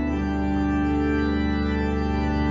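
Church organ playing sustained chords, moving to a new chord just after the start.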